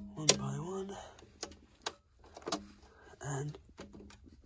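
Miniature circuit breakers on a domestic consumer unit being switched off one by one: about four sharp plastic clicks a second or so apart. The circuits are being isolated so that a tripped RCD can be reset.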